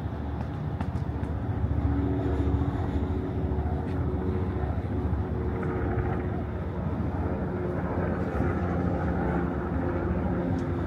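City traffic noise: a steady low rumble of motor vehicles with an engine drone in it, getting a little louder about two seconds in.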